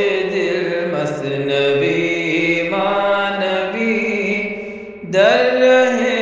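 Chanted vocal music: a voice sings long, held notes in a slow melody. The sound dips briefly near the end before a new phrase begins.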